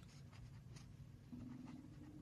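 Near silence: faint room tone with a low hum, and a faint steady tone coming in a little past halfway.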